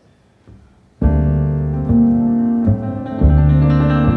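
About a second of near silence, then piano and plucked acoustic double bass start playing together. Deep bass notes sound under piano chords.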